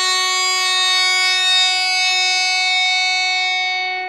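A guitar note ringing out long and steady, with bright overtones, fading slightly near the end.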